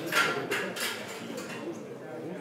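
Low murmur of voices in a billiard hall, with three short hissing sounds in the first second, the first the loudest.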